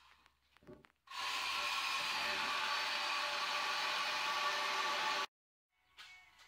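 A small electric motor runs at a steady speed with an even whine. It starts about a second in and cuts off suddenly a little after five seconds.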